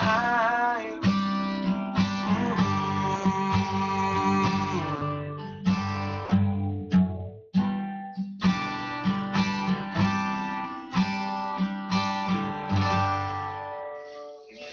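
Acoustic guitar strummed in a steady rhythm of about two chords a second, with a man's held sung note wavering in vibrato and ending about a second in. The strumming breaks off briefly about seven and a half seconds in, then resumes and dies away near the end as the song closes.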